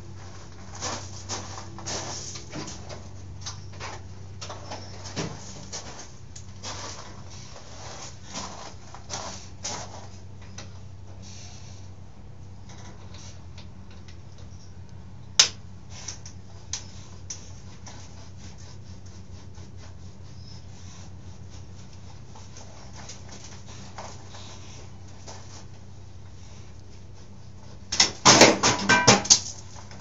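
Metal parts and hand tools clinking and knocking as a dirt bike is taken apart on a workbench, over a steady low hum. The knocks come scattered for the first ten seconds, with one sharp click about halfway through, and end in a loud rattling clatter of metal near the end.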